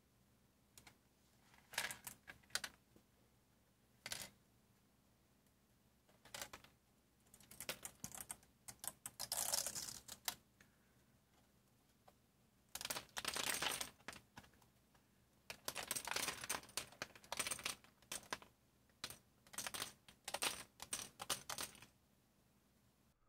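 Small black 3D-printed plastic key stems clicking and clattering as they pop off a flexed print bed sheet and drop onto a work mat. The sound comes in scattered bursts of light clicks, busiest in the second half.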